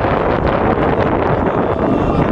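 Wind buffeting an outdoor camera microphone: a loud, steady, rough noise heavy in the low end, with scattered short crackles.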